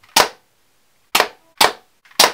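Three sharp snaps of an airsoft gun firing ground-down thumbtack darts into a cork board, one right at the start and two close together about a second later.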